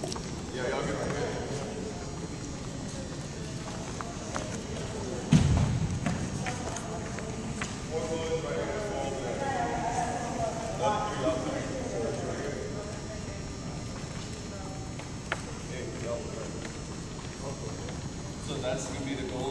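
Indistinct voices echoing in a gymnasium, with scattered footsteps on the hardwood floor and one loud, low thump about five seconds in.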